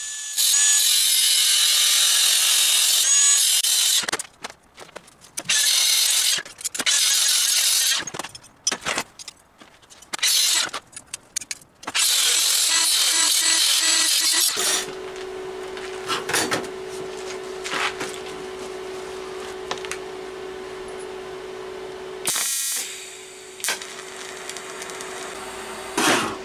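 Angle grinder with a cut-off disc cutting through steel bar, in several loud bursts a few seconds long with short pauses between. For roughly the last eleven seconds a much quieter steady hum with occasional clicks takes over, broken once by a short loud burst.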